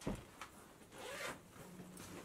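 Clothes being handled in a wooden wardrobe: a soft knock at the start, a small click, then a short rasping rustle about a second in.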